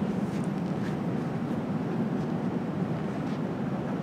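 Steady background noise of a large indoor exhibition hall: an even, low hum with no distinct events.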